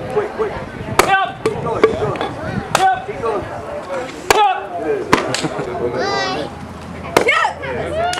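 Wooden boards being broken by martial-arts kicks and strikes: a run of sharp wood cracks spread over several seconds, with spectators' voices and shouts in between.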